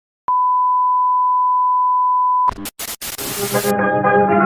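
A steady, high electronic beep, a single pure tone held for about two seconds, that cuts off abruptly into a few sharp clicks and a short burst of hiss. Music with sustained notes then begins.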